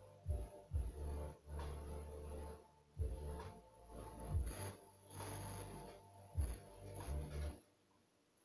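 Plastic squeeze bottle of paint sputtering and squelching as paint and air are squeezed out in irregular bursts, stopping near the end.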